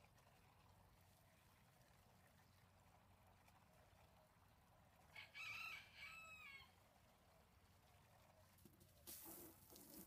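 A rooster crows once about halfway through, a two-part call that falls in pitch at the end. Near the end, water from a garden hose starts splashing into a plastic container.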